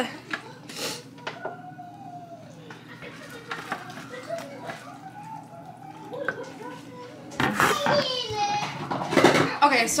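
Children's voices in the background, faint at first, then one child talking loudly with a high voice near the end. A few light scrapes of a spoon stirring soup in a crock pot early on.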